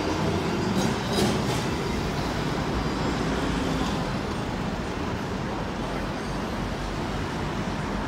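City street traffic: cars driving past close by while a W8 class tram moves off down the road, the noise slowly fading as it draws away.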